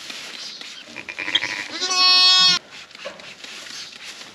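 A sheep bleating in a lambing pen: one loud, steady-pitched bleat about two seconds in, just under a second long, with a fainter call shortly before it.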